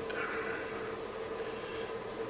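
Steady electrical hum, one even buzzing tone, from a 24 V AC mains transformer just switched on and powering a linear power supply board with no load.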